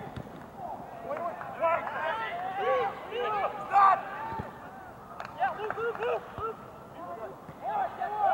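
Players' voices shouting across a soccer field during play, many short overlapping calls with no clear words.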